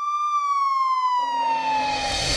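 A siren's single long wail, one loud tone sliding slowly downward in pitch. A low background noise comes back in under it about a second in.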